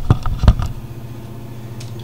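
Two short knocks in the first half-second, the louder one about half a second in, then the steady low hum of the running home-built generator rig.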